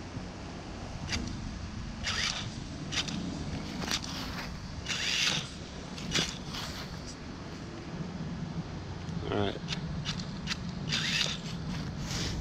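Vaterra Twin Hammers RC rock racer driven by a Castle 3850kv brushless motor, whirring in short throttle bursts as its tyres scrabble and scrape on the bark of a log. There is a short rising-and-falling motor whine about nine seconds in.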